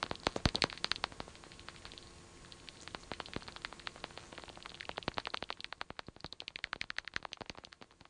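Bat detector turning bats' echolocation calls into a train of sharp clicks that speeds up and slows down, packing into fast rattling runs about five and seven seconds in, over a faint hiss.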